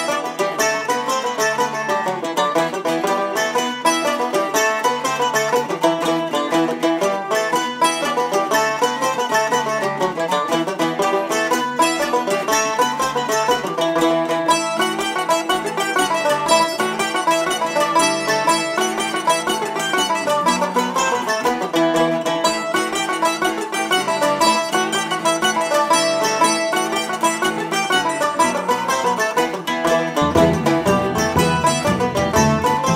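An English jig played on banjo, mandolin and a larger teardrop-bodied plucked string instrument together, at a steady dance beat.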